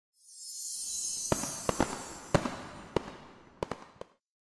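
Fireworks sound effect for an animated logo: a high fizzing hiss builds up and fades, while about seven sharp cracks go off between about one and three and a half seconds in.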